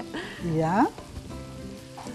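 Chopped peppers, onion and minced meat sizzling in oil in a frying pan, stirred with a wooden spoon. A brief voiced sound rises over the frying about half a second in.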